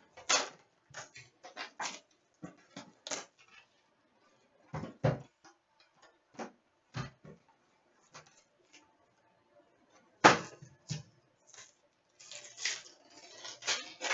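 A cardboard box of trading-card packs being opened and its packs tipped out onto a glass counter: irregular scrapes, taps and clicks, with a sharper knock about ten seconds in. Near the end comes denser rustling as a pack is handled and opened.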